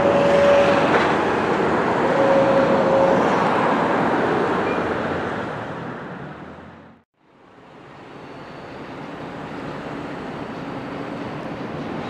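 Steady outdoor traffic noise, a wash of road vehicles with two short steady tones in the first three seconds. It fades out to silence about seven seconds in and fades back in.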